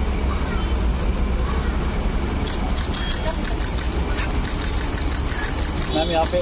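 Camera shutters clicking in quick runs, about four or five a second, starting about two and a half seconds in, as photographers shoot a posed pair. Beneath them is the steady low running of a vehicle engine and street traffic.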